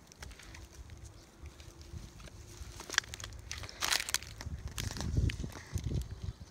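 Dry grass and reed stalks crunching and rustling in irregular bursts, with a few sharp clicks and low handling bumps.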